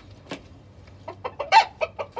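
Chickens clucking: a few short clucks, then a quick run of them in the second second, the loudest about one and a half seconds in.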